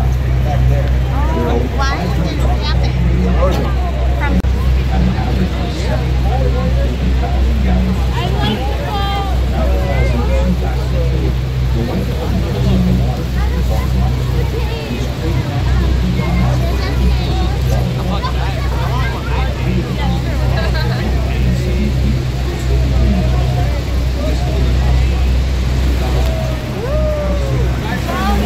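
A waterfall tour boat's engine droning low and steady under a crowd of passengers chattering on deck, with a constant rushing noise of water and wind over it.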